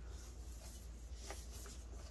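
Faint handling of a cardboard advent calendar box: a few soft taps and light rustling over a low, steady room hum.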